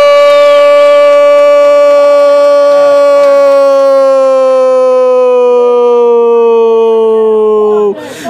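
Football narrator's long goal shout, "gol" drawn out as one loud held vowel for almost eight seconds, its pitch slowly sinking, cut off just before the end. It marks a goal just scored.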